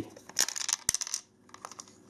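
Light clicks and rattles of the hard plastic shell of an emptied battery charger being handled and turned over, with one sharper click near the middle.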